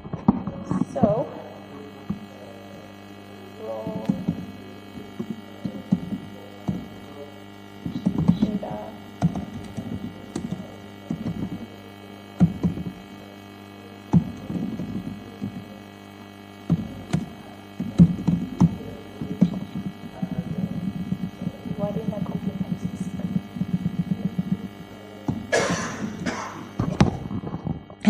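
Laptop keyboard typing, irregular clicks of keys being struck, heard through the talk's microphone over a steady electrical mains hum.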